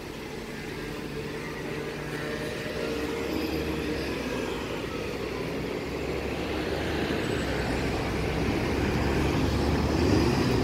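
Road traffic: engines and tyres of passing cars and buses, a steady low rumble that grows steadily louder.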